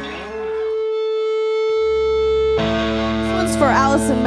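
Band music fading out, then a single steady held note with overtones. About two and a half seconds in, the sound cuts abruptly to amplified electric guitar with sliding pitches.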